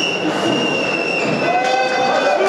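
Football stadium crowd noise with several long, high-pitched whistling tones held over it, overlapping at different pitches.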